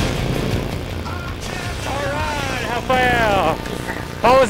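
Low rumble of wind on the camera microphone. About halfway through come two drawn-out excited calls from a voice, over faint music that is fading out.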